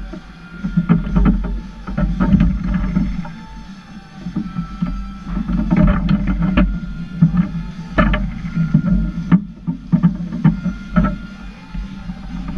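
Table football in play on a Lettner table: sharp irregular clacks as the ball is struck by the plastic figures and bounces off the walls, with rods knocking against the bumpers, over background music.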